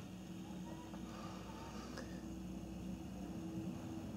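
Quiet room tone: a faint steady hum, with one faint click about two seconds in.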